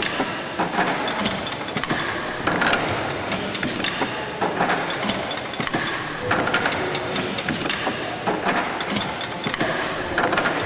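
Stationary steam pumping engine running slowly, its motion and ratchet-driven mechanical lubricator clattering and clicking in a steady repeating rhythm, with a louder clatter about every two seconds.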